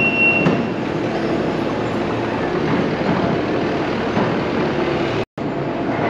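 Kubota SVL compact track loader running, its engine and hydraulics a steady mechanical drone as it holds a bulk seed box up on its forks, with a thin high whine that stops just after the start. The sound cuts out suddenly for a moment near the end.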